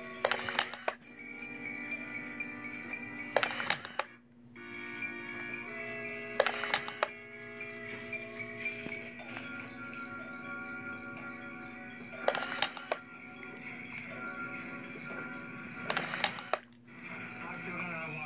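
A wooden useless box is switched on by a finger about five times, and each time its toggle switch and servo-driven arm make a short burst of clicks as the arm pops out and flips the switch back off. Music plays steadily underneath.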